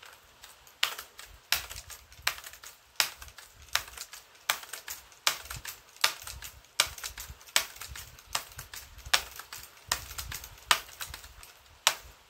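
A steady series of sharp ticks, about one every three-quarters of a second, evenly spaced and alike in strength.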